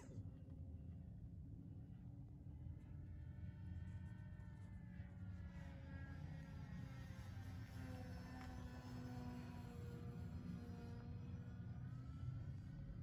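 Foam-board RC model plane flying overhead, its motor and propeller a faint whine whose pitch slides down over several seconds and rises again near the end as the plane passes and turns. A steady low rumble runs underneath.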